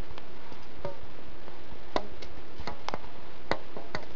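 Scattered light clicks and taps of hands turning a tube while winding copper magnet wire onto it for a Tesla coil secondary, the sharpest about two and three and a half seconds in, over a steady background hiss.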